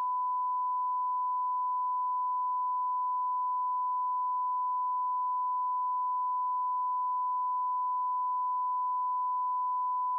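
A single steady electronic beep tone, one pure pitch held without a break, cutting in just before and stopping just after.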